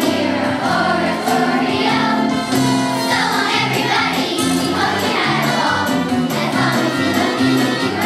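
Children's choir singing together over an instrumental accompaniment with a steady beat.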